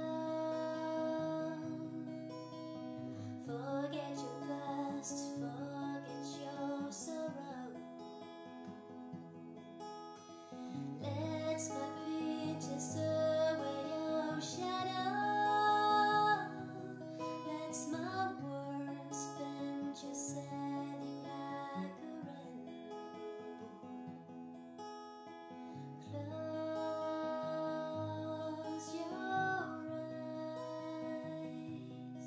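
Steel-string acoustic guitar, capoed at the fourth fret, playing a lullaby's chord pattern, with a woman's voice singing the melody over it in phrases separated by guitar-only gaps.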